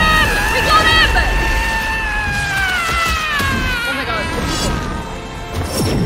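Anime film soundtrack: a character's single long scream, held for about four seconds and slowly falling in pitch, over dramatic music and a low rumble, with a crash near the end.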